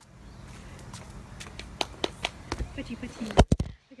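A series of sharp clicks and knocks over faint outdoor background noise, ending in two loud low thumps about three and a half seconds in.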